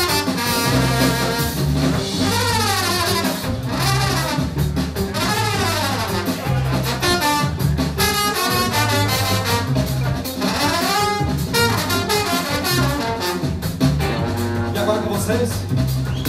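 Live band music led by a trumpet solo, playing fast runs that sweep up and down, over a repeating bass line and percussion.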